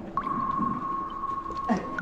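Radio-drama sound effect: a single steady whistle-like tone that slides up briefly at its start and then holds one high note for about a second and a half, followed near the end by a short downward swoop.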